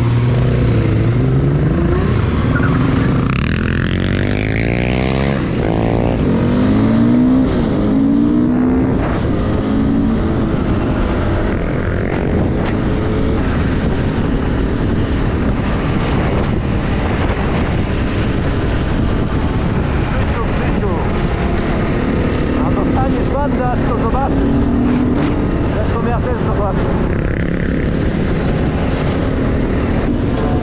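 Enduro dirt bike engine revving up and down through the gears as it pulls away, then running steadily at road speed, with other motorcycle and quad engines alongside and wind rushing on the microphone.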